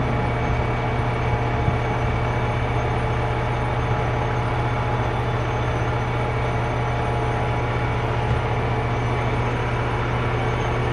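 Fire engine's diesel engine running steadily at a constant pitch, a continuous low drone as it pumps water to the hose lines.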